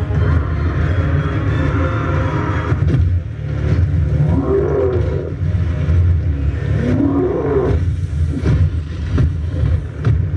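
Fight-scene soundtrack of an animated battle: a heavy, continuous low rumble with scattered sharp impacts, and two short sounds that glide up and down in pitch, about four and a half and seven seconds in.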